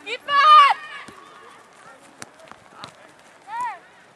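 High-pitched shouts from young football players: one long, wavering shout just after the start, then a few sharp knocks, and a shorter call near the end.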